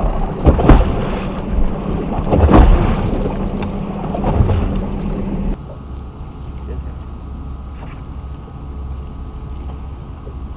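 Wind buffeting a camera microphone on a boat deck, with two loud thumps in the first few seconds. About halfway through it cuts to a quieter steady low hum with a faint high whine.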